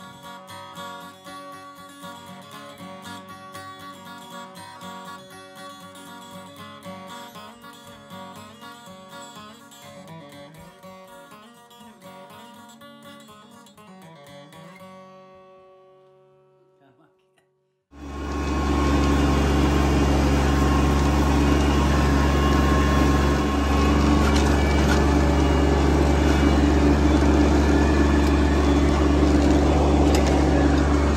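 Plucked-string instrumental music plays and fades out about halfway through. After a brief silence the sound cuts to a tractor engine running steadily and loudly for the rest.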